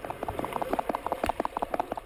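Racing heartbeat sound effect: fast, even thumps, several a second, standing for a heart beating at 270 beats a minute.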